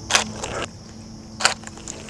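Camera shutter firing twice, about a second and a quarter apart, the first click a little longer than the second.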